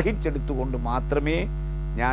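A man talking in the first second and a half, then pausing, over a steady low electrical mains hum on the recording.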